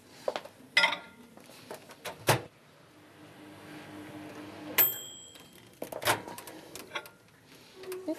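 Microwave oven running with a steady low hum, which ends about five seconds in with a short high beep as the heating finishes. Scattered clicks and knocks come before and after.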